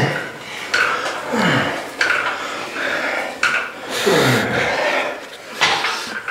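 Leg extension machine's weight stack clanking in a steady rhythm, about one rep every second and a half, during a high-rep burnout set. Each rep brings a short low falling sound and a metallic knock.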